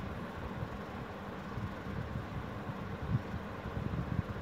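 Steady low background hum and rumble, like a fan or air conditioner running in a small room, with a few soft low thumps.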